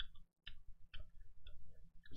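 Faint, soft clicks scattered irregularly, a few a second, in an otherwise quiet room.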